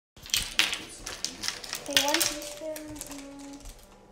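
Quick clicks and crinkles from handling plastic measuring spoons and a paper-and-plastic cinnamon packet on a table, with a quiet child's voice for about a second and a half near the middle.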